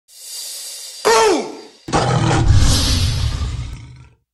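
Logo sound effects: a hissing whoosh, then about a second in a short cry that falls steeply in pitch. Just before two seconds a loud, low tiger roar starts and fades out near the end.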